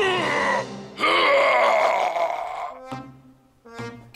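The cartoon Bear groaning with his mouth wide open, a short cry and then a longer, louder one starting about a second in, over background music.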